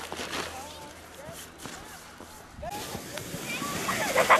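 Children's short calls and laughter over the hiss of sleds scraping down packed snow; the sound jumps louder about three-quarters of the way through.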